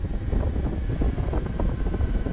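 Wind rushing over the microphone on top of the low rumble of a KTM 790 Adventure's parallel-twin engine, riding steadily at town speed.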